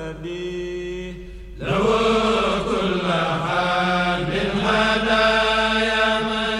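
Sustained vocal chanting. About a second and a half in it grows louder and fuller, with long held notes.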